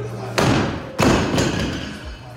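A loaded barbell with rubber bumper plates, about 120 kg, dropped from overhead onto wooden jerk blocks: two heavy thuds about half a second apart as the bar lands and settles.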